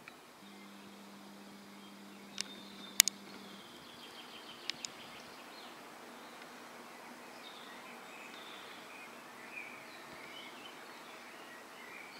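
Faint outdoor ambience over a town: a steady background hum, with a low steady tone for the first few seconds. Sharp clicks come at about two and a half, three and five seconds in, the one at three seconds the loudest. Short bird chirps are scattered through the second half.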